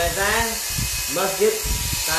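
A man's voice speaking, with a steady hiss behind it.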